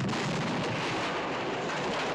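Explosion of a bridge being blown up, heard as a continuous dense rumble of blast and falling debris at a steady, loud level.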